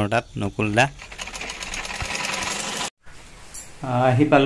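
Vintage black sewing machine running, stitching with a rapid, even ticking for about two seconds before cutting off suddenly.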